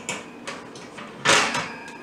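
A metal baking sheet scraping briefly across a wire cooling rack as it is set down, one short rasp a little over a second in.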